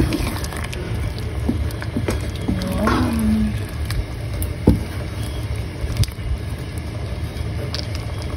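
A wooden spoon stirring thick pork curry in a cast-iron pot to melt a block of curry roux. Scattered clicks and knocks of the spoon against the pot, the sharpest a little under five seconds in and again at six seconds, sit over a steady low rumble.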